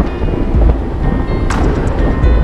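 Background music with a deep bass and a sharp percussive hit about one and a half seconds in.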